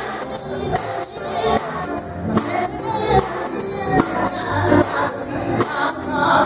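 Gospel music: a choir singing over a steady percussive beat.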